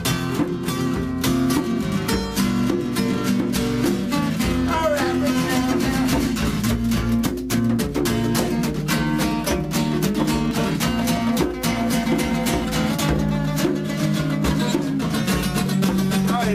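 Live acoustic rock: two acoustic guitars strummed in steady chords, one of them played with the feet, with a djembe hand drum keeping the beat.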